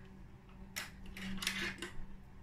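A sewing machine's snap-on presser foot being unclipped and handled: a few small metallic clicks and rattles in the second half.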